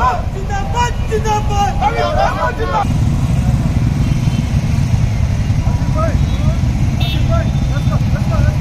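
A procession of many motorcycles running at low speed, a dense low engine rumble, with men shouting over it: loud shouts in the first three seconds, fainter ones later.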